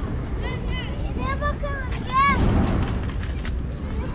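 Stray cat meowing at a person about five times in quick succession, short calls that rise and fall in pitch, the last and loudest about two seconds in: begging for food or attention.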